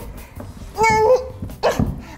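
A girl's strained vocal effort sounds, two short high-pitched grunts, as she struggles to lift a heavy box.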